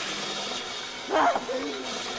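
A character's voice: a short vocal cry about a second in, then a lower, wavering vocal sound, over a steady hiss.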